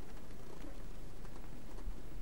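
Steady faint background hiss with a low hum, with no distinct event.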